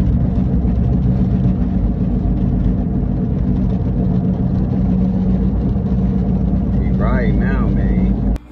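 Car cabin noise while driving: a loud, steady low drone of engine and road. A voice speaks briefly about seven seconds in.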